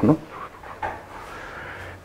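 A man's voice says one short word, then a pause of quiet room tone with a faint small noise about a second in.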